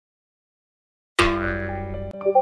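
Silence, then about a second in a sudden bright ringing sound effect with a low rumble underneath, fading away over the next second.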